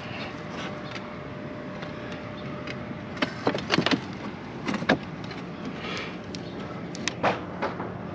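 Roof tiles clacking and knocking as they are handled and shifted on a tile roof: a few sharp clacks in small clusters from about three seconds in, over a steady outdoor background hum.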